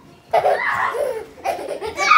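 A young child laughing, starting about a third of a second in and carrying on without a break.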